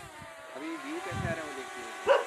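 A steady whine from a small motor, several tones held level, with a brief low sound about a second in.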